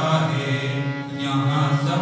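A man singing a slow devotional song through a microphone, holding long notes over a harmonium's steady reed tones.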